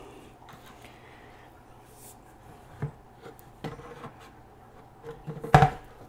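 Quiet handling of a plastic bucket lid and a plastic fill pipe: a few light knocks, then one sharp knock near the end as the fill pipe is set into the hole in the lid.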